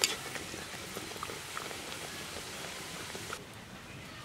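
Hot oil sizzling and crackling around a dal puri deep-frying in an iron karahi, with a sharp click at the start. The sizzle drops away suddenly about three and a half seconds in.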